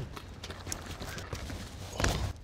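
Faint knocks of basketball play on a hardwood gym floor, over quiet room noise in a large hall.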